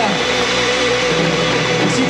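Live rock band playing, with a distorted electric guitar holding wavering, bent notes with vibrato.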